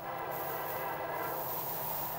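Distant locomotive air horn on a Florida East Coast freight train, one long blast that fades out near the end, sounded by the approaching train.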